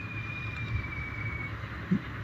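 Steady low background rumble with no clear single source, and a faint thin whistle-like tone that slides slightly down in pitch and fades out about halfway through.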